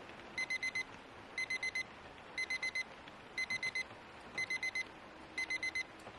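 Digital timer alarm beeping in groups of four quick electronic beeps, about one group a second, six groups in all: the study countdown has run out.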